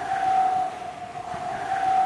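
Outro logo sound effect: a hissing whoosh with a single held tone under it, swelling twice.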